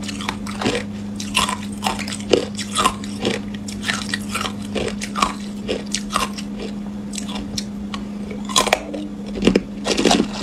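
Hard clear ice being bitten and chewed, a run of irregular sharp crunches, the loudest near the end. A steady low hum runs underneath.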